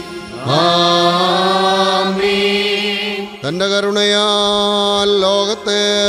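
Sung liturgical chant of the Syro-Malankara Qurbana: a voice holds long, drawn-out notes in two phrases. Each phrase opens with an upward slide in pitch, the first about half a second in and the second about three and a half seconds in.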